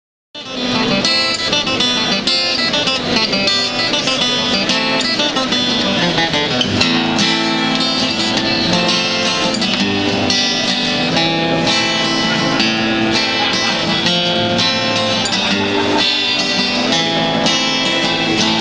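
A handmade Hodges guitar being played: a continuous run of plucked notes and chords that starts about half a second in.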